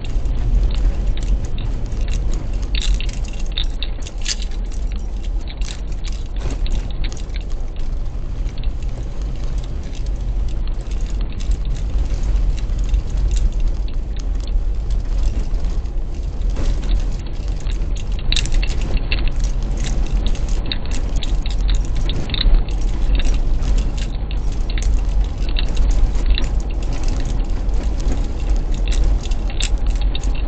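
Car driving at steady speed heard from inside the cabin: a low, steady road and engine rumble with frequent small rattles and clicks, thickest a few seconds in and again over the second half.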